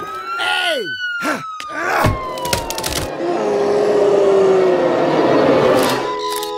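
Cartoon sound effects: a long whistle that rises for about a second and then slowly falls, with quick falling swoops and sharp clicks over it. For the last three seconds there is a dense hissing noise with a faint droning tone under it.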